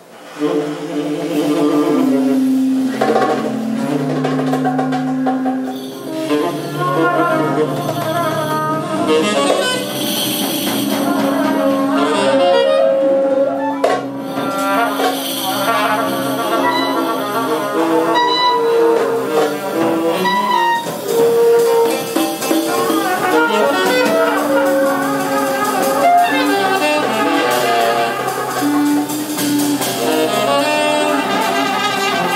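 Live band music: saxophone and other wind instruments playing long held notes and melody lines over hand percussion, coming in all at once at the very start.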